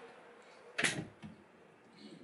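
A single short knock a little under a second in, as a boat's cabinet door is pushed shut.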